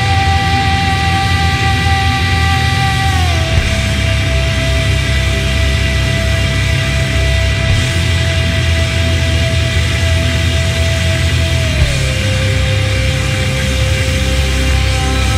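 Loud, heavy progressive rock with distorted bass and drums under one long held sung note, which steps down in pitch twice.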